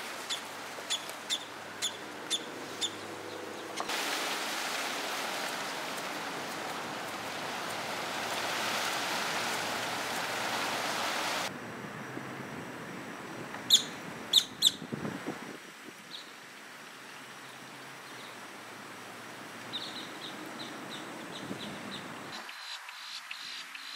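Outdoor ambience with a bird chirping repeatedly, about twice a second. About four seconds in, a steady rushing noise comes in and cuts off abruptly some seven seconds later. A few loud, sharp bird calls follow, and softer chirps start again near the end.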